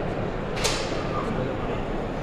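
Soft swimbait cast with a fishing rod into a display aquarium: one sharp swish about half a second in, over the steady noise of a large hall.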